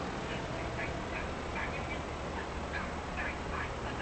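Short, high-pitched animal calls repeating irregularly, several a second, over a steady low hum.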